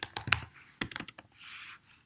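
Typing on a computer keyboard: a quick run of key clicks for about the first second, then a short soft hiss near the end.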